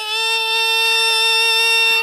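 A singer holding one long, steady note of about two seconds in a Jhumur song of Assam's Tea Tribe, the pitch dead level with no vibrato.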